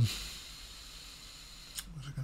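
Quiet room tone with a faint steady high whine and one light click near the end. A hummed voice fades out at the very start.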